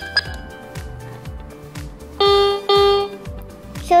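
MQ-6106 electronic keyboard: a short pitched beep as a panel button is pressed, then two loud held notes of the same pitch about two seconds in, over a steady beat of low electronic drum thuds.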